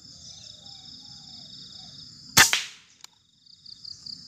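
A single shot from a Bocap Bullpup 360cc PCP air rifle firing a slug: one sharp crack with a short fading tail about two and a half seconds in. A steady high buzz of insects runs underneath.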